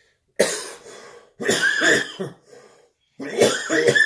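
A man coughing in three bouts: a sudden first cough about half a second in, a second bout a second later, and a third near the end.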